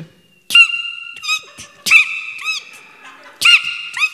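A person imitating a hawk's call: three loud, high cries, each held with arching swoops in pitch.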